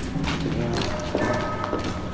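Footsteps on a wet concrete tunnel floor, a quick run of steps, with faint voices behind them.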